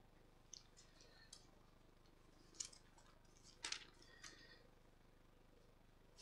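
Near silence with a handful of faint, brief rustles and light clicks spread through it, the clearest about two and a half and three and a half seconds in: small handling sounds at a lectern as glasses are put on and the Bible passage is looked up.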